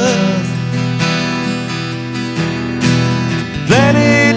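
Two acoustic guitars strumming chords in an instrumental stretch of the song. A singing voice comes back in near the end.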